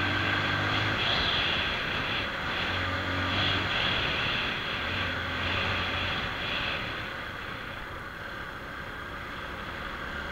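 Motorcycle engine running while riding along a rough road, its low hum rising and easing with the throttle, with wind rushing over the microphone. It gets a little quieter in the second half.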